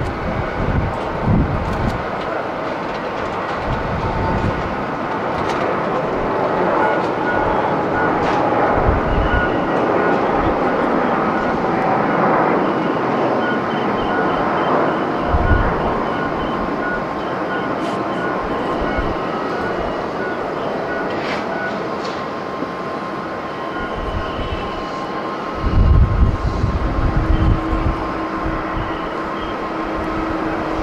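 Airbus A350's Rolls-Royce Trent XWB jet engines at takeoff thrust: a steady roar with a faint whine as the airliner rolls down the runway and climbs away. Low rumbles of wind on the microphone come and go, strongest near the end.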